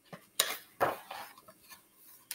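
A page of a large picture book being turned by hand: two sharp paper rustles, a little under half a second apart, followed by a few softer handling sounds.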